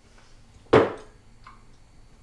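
A single sharp tap or knock about three-quarters of a second in, dying away quickly.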